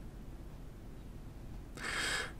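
Quiet room tone with a low hum, then a short intake of breath near the end, just before speech resumes.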